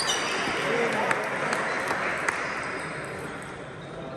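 Table tennis ball hit and bouncing during a rally: a sharp click with a short ringing ping right at the start, then two more sharp clicks about a second apart, as the rally ends. A steady murmur of voices carries on underneath.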